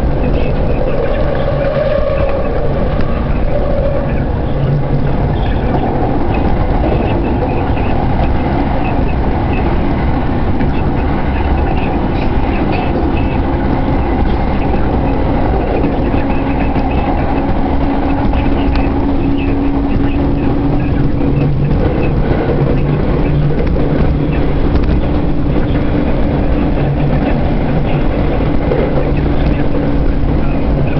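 Train running noise heard from inside a carriage: a loud, steady rumble with a faint whining tone coming and going.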